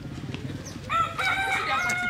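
A rooster crowing once. The call starts about a second in, rises briefly, then holds as one long, loud call.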